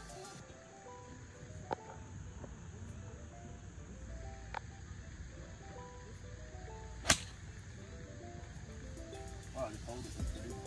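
A golf club strikes the ball once, a single sharp crack about seven seconds in, over soft background music.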